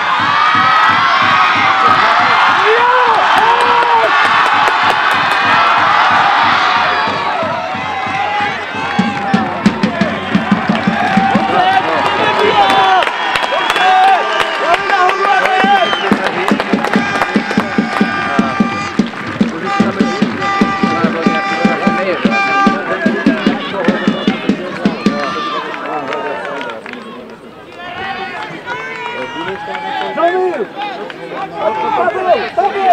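A rugby crowd cheering and shouting loudly for the first several seconds. It then keeps up rhythmic beating and clapping, with steady held pitched notes over it, fading near the end.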